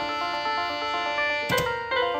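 Toy electronic keyboard sounding many overlapping electronic notes as a small child presses its keys and buttons, with a knock about one and a half seconds in.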